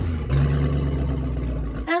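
Speedboat engine sound effect: a rush of noise, then a steady low engine drone that cuts off abruptly near the end.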